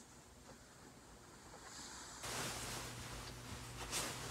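Clothing rustling as a white faux fur coat is handled and put on, faint at first and louder from about two seconds in.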